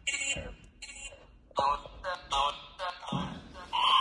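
Necrophonic spirit-box app on a phone giving out a string of short, broken, voice-like fragments, each a fraction of a second long.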